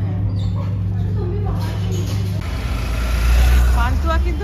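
A steady low hum with faint voices, then an abrupt change about two and a half seconds in to street traffic noise with a deep rumble, loudest near the end.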